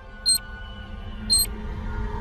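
Two short, high electronic blips about a second apart over intro music that grows louder.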